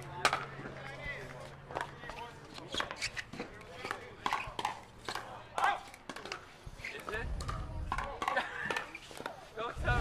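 Pickleball rally: paddles strike a plastic ball in a quick, irregular run of sharp pops. Men's voices call out during the exchange.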